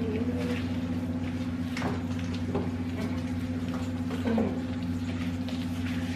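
Spatula stirring thick cookie dough in a plastic bowl: soft scraping and squishing with a few faint clicks, over a steady low hum.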